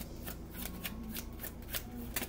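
A deck of tarot cards being shuffled by hand: a quick, uneven run of crisp card snaps and slaps, about five a second.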